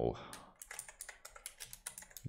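Computer keyboard typing: a quick run of keystrokes entering a name.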